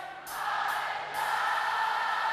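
Large concert crowd singing a chorus line together, a blurred mass of many voices holding the words with a low steady tone from the band beneath.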